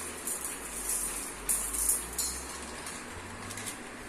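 Dry sago pearls trickling from a plastic bag into a stainless steel bowl, with the plastic bag crinkling in short, faint bursts.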